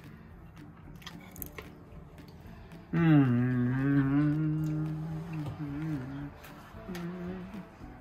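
A man humming a long, contented "mmm" on one held note while eating, lasting about three seconds, then a shorter, quieter hum near the end. A few faint clicks come before it.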